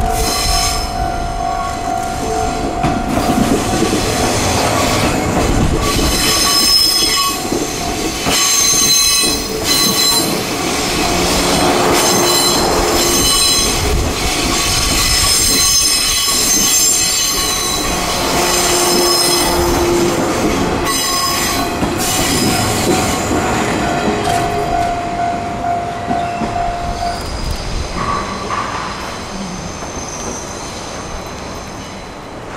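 JR East 189 series electric multiple unit running on the rails, its wheels squealing with high-pitched squeals that come and go over a steady running noise.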